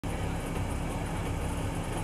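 Supercharged 1.8-litre four-cylinder engine of a 1990 Mazda Miata idling steadily, heard from a microphone at the rear bumper so the exhaust dominates.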